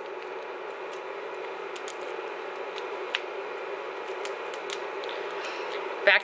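Cardboard packaging being torn and peeled by hand off a pressed blush pan: scattered small crackles and clicks over a steady background hiss.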